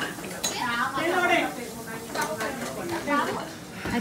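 Metal spoon stirring and scooping thick cream in a ceramic bowl, clinking against the bowl, with people talking in the background.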